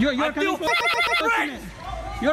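A man shouting in a high, strained, quavering voice during an angry confrontation.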